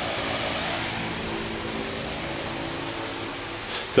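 Steady hiss with a faint low hum, like a fan or similar small machine running.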